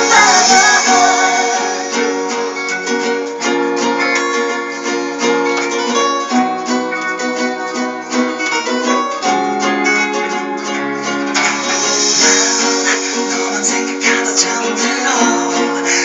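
Two acoustic guitars played together, a mix of strummed chords and picked notes in a steady song accompaniment.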